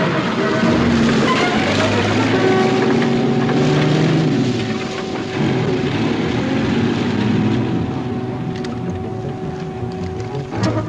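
A motor vehicle's engine running while driving, its pitch rising and falling, with some wind-like noise; it grows a little quieter in the second half.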